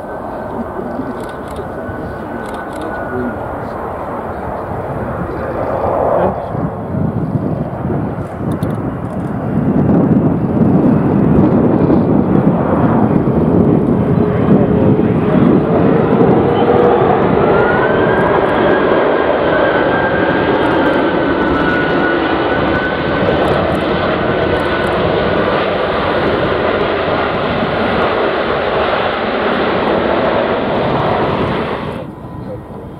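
Airbus A330 MRTT tanker-transport's jet engines running as it lands and rolls out along the runway: a steady jet noise with a high fan whine that slides slowly in pitch. The noise grows louder about ten seconds in and stays loud.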